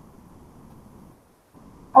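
Quiet room noise with no distinct sound event, dipping nearly silent partway through; a voice says "Oh" at the very end.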